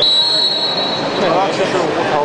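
A long, high, steady whistle blast that stops a little over a second in, most likely the wrestling referee's whistle. Voices in the hall follow.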